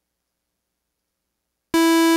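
Silence, then near the end a single held synthesizer note from Native Instruments Massive starts abruptly: one steady pitch, loud and rich in overtones, the solid note being exported for sampling into single-cycle waveforms.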